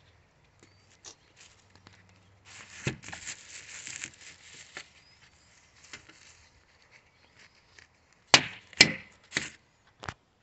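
Loose plastic wrapping rustling and crinkling as it is handled, then three sharp clicks near the end.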